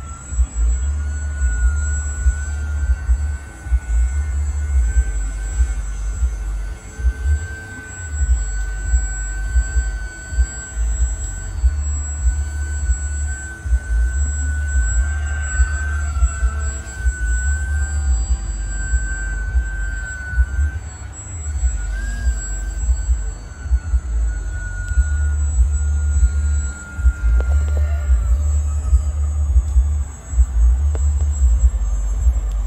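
Radio-controlled model Fokker triplane flying, its motor and propeller giving a thin, steady whine that wavers slightly in pitch with throttle and fades out near the end. A heavy, gusty low rumble on the microphone lies under it.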